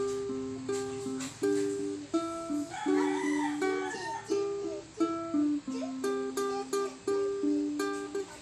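Ukulele played fingerstyle: a melody of plucked single notes over picked accompaniment, in a steady rhythm. About three seconds in, a brief wavering call sounds in the background for about a second.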